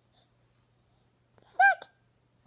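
A toddler's brief high-pitched squeal, rising then falling in pitch, about one and a half seconds in after a near-silent stretch.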